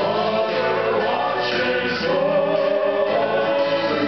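Men's southern gospel vocal group singing in close harmony into handheld microphones, holding long sustained chords.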